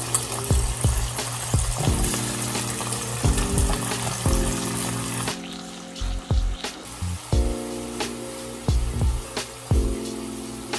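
Ribeye steak and garlic cloves sizzling in melted butter in a hot skillet, under background music with a steady beat. The sizzle drops away about five seconds in, leaving mostly the music.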